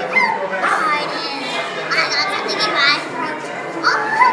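A child's voice imitating a dog barking and yipping, mixed with speech, in pitched sliding calls.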